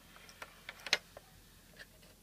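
A few light, sharp plastic clicks and taps from a hand handling a plastic toy house, the loudest about a second in.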